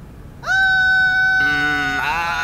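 A young girl's shrill scream that starts about half a second in and holds one steady pitch. About a second later a second, lower voice joins in screaming.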